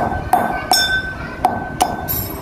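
Pestle striking a dried harad (black myrobalan) fruit in a stainless-steel mortar: five sharp metallic clinks with a ringing after each. The fruit is being cracked open so its stone can be taken out.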